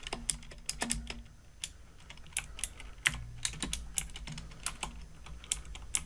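Typing on a computer keyboard: a run of irregular keystrokes as a misspelled name is corrected and a short new name is typed.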